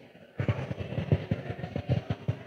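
Quick, irregular soft knocks and thumps, several a second, starting about half a second in.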